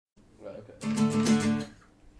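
An acoustic guitar strummed briefly: a quick run of strokes on one chord for about a second, then left to fade.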